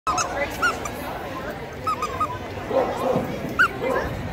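A dog giving several short, high whimpering yips.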